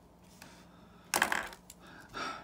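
A pen put down on the table with a short clatter a little past a second in, after a faint click about half a second in.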